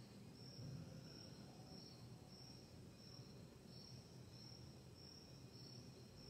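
Faint insect chirping, a high pulse repeating steadily about three times every two seconds, over low room noise.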